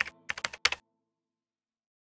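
Computer keyboard typing sound effect: a quick run of key clicks that stops just under a second in.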